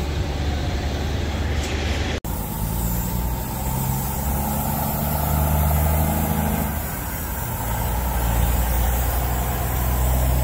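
Heavy diesel truck engine running steadily with a low hum. The sound cuts out for an instant about two seconds in, then the hum carries on.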